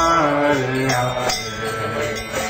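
Devotional chanting: a voice singing a melodic chant line over accompanying music, with ringing metallic strikes like small hand cymbals.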